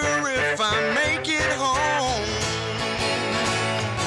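A band plays live with acoustic and electric guitars. In the first two seconds a wavering melody line bends over the chords, then steady strummed chords carry on.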